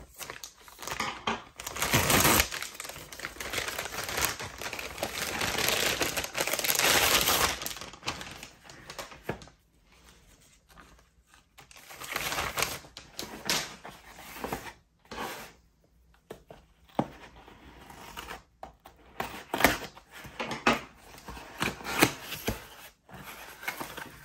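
Packaging being unpacked by hand. First comes a long stretch of rustling and crinkling from a shipping mailer being opened. Then there are quieter, scattered knocks and scrapes as a small cardboard box is set down and its flaps are opened.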